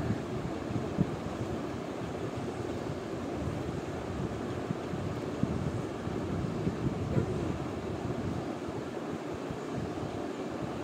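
Steady rushing background noise, with a few faint soft knocks as cut mango pieces are slid from a plate into a steel mixer-grinder jar.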